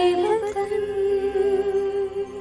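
Girls' voices singing together in unison over a faint backing track, rising into one long held note at the close of a song.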